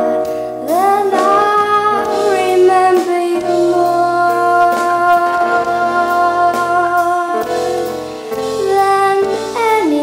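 A woman singing a slow song, her voice sliding up into long held notes, over a quieter instrumental accompaniment.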